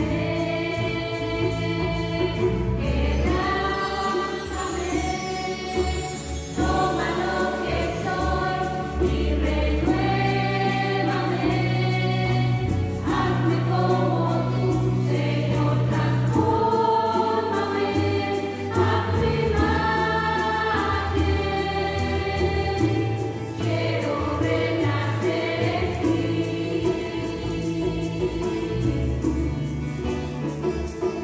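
Mixed church choir singing a Spanish-language worship song in harmony over electric bass guitar, with a sweep down a set of bar chimes about three seconds in.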